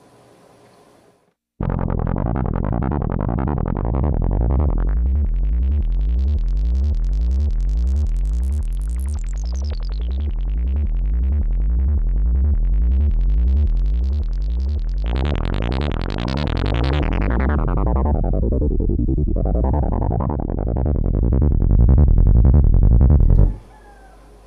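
Monophonic analog synth made from a Moog MF-107 FreqBox oscillator and MF-101 Lowpass Filter, playing a fast repeating arpeggiated bass line sent from Reason's RPG-8 arpeggiator. Its tone brightens and darkens in sweeps as the pedal knobs are turned, and it stops suddenly near the end.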